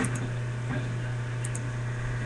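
Steady low electrical hum of a webcam recording, with a couple of faint brief sounds and no speech.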